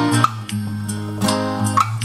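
Acoustic guitar strummed, a few chords ringing out between sung lines, with a small-room reverb effect on the guitar.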